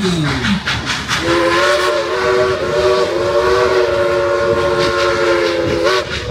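A 2-8-2 steam locomotive's whistle blowing one long chord of several notes at once, starting about a second in and cut off just before the end, heard from the open passenger cars over the steady rolling of the train.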